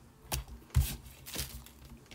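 A strip of card being handled and flipped over on a cutting mat: three short paper rustles and taps, about a third, three-quarters and one and a half seconds in.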